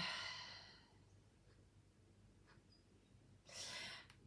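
A woman's sigh: a long breathy exhale that fades away over the first second, followed by near silence and a short breathy rustle near the end.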